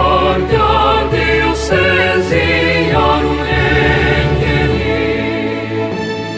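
Choir singing a school anthem in Kinyarwanda, several voices in harmony with vibrato, over instrumental accompaniment with sustained bass notes.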